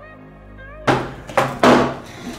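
Electronic background music, cut off about a second in by small plastic water bottles knocking down onto a wooden table, three sharp knocks in quick succession.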